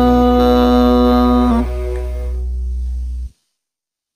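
Final sustained chord of a pop ballad's karaoke backing track, one steady note over a low bass, ringing out. It drops quieter about one and a half seconds in and cuts off abruptly just after three seconds, where the recording ends.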